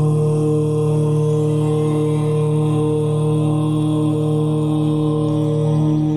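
A single long chanted "Om", held at one steady low pitch.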